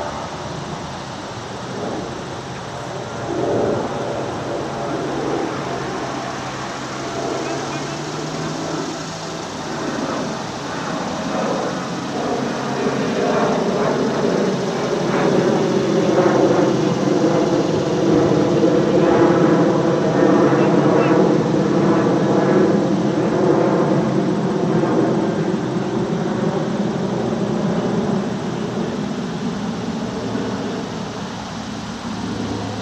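A low engine drone from a passing motor, growing louder from about twelve seconds in and easing off near the end, with voices over it.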